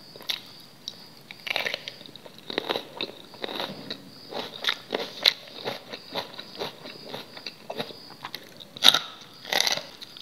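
Close-up chewing and biting of food, a steady run of short moist mouth clicks and crunches about twice a second. Two louder bites come near the end.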